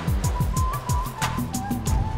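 TV segment intro music: a fast ticking electronic beat under a high synth melody, with a quick run of falling bass sweeps in the first second or so.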